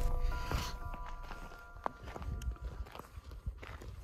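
Footsteps of people walking on a dirt path, under a few held musical notes that come in one after another and fade out about three seconds in.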